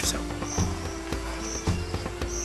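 Insect chirping in short high calls about once a second, over low steady held tones.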